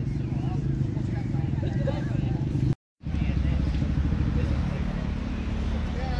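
A motorcycle engine idling steadily with a low, fluttering rumble, under voices talking in the background. The sound cuts out completely for a moment a little before the middle, then resumes.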